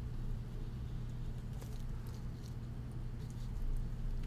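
Rubber case ball gripping and twisting on a watch's screw-down case back to tighten it: faint scattered ticks and rubs of rubber and gloves on the steel case, over a steady low hum.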